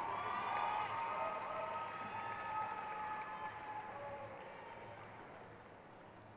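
Spectator crowd applauding and cheering, with scattered shouts, dying away gradually over several seconds.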